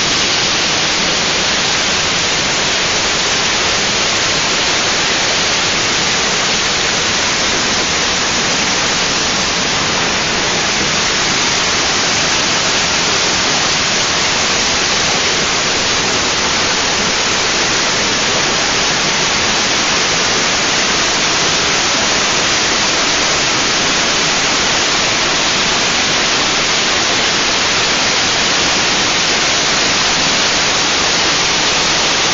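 Loud, steady rush of a mountain stream's whitewater tumbling over rocks, close to the microphone.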